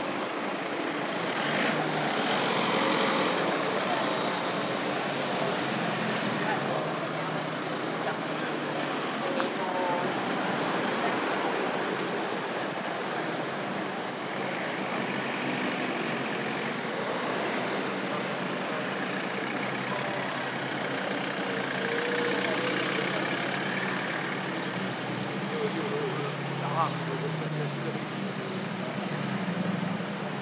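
Road traffic: a slow line of cars and camper vans moving past close by with engines running, with indistinct voices of passers-by in the background.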